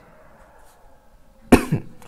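A single cough, sudden and short, about one and a half seconds in, after a quiet stretch.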